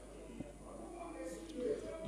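A short pause in a man's amplified speech: faint room sound with a faint voice in the background and one small click.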